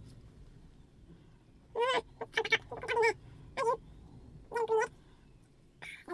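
A series of about five short, loud animal calls with a wavering pitch, between about two and five seconds in.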